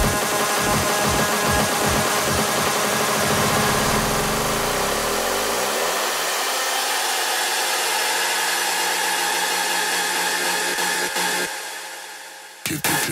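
Hardstyle track in a build-up: the kick drops out and a loud rushing noise sweep with held synth chords takes over, the bass gone for most of it. It fades away near the end, just before the drop.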